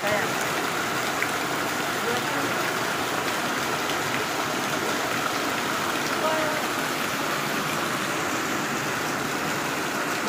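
Heavy rain and floodwater rushing down a narrow lane: a steady, unbroken rush of water.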